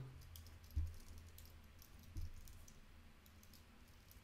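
Computer keyboard typing, faint scattered key clicks with two louder keystrokes about one and two seconds in, over a low steady hum.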